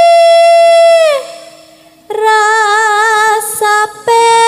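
A female sinden singing into a microphone. She holds one long steady note that slides down and breaks off a little past a second in, then after a short pause sings a lower note with a slow wavering vibrato.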